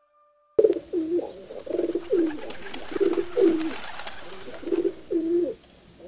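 Pigeons cooing: a run of short, low, repeated calls that starts abruptly about half a second in, over a light hiss. Just before it, faint held notes of music end.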